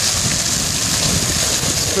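Pond fountain's single vertical jet falling back into the water, a steady hiss of splashing spray. A low rumble of wind on the microphone runs under it.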